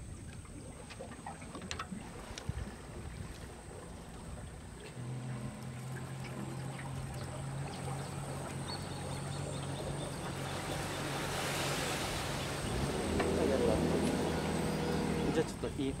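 A boat engine hum comes in about five seconds in and grows steadily louder, with a rushing noise swelling near the middle, as of a motorboat running close by on the river. A few light clicks sound in the first two seconds.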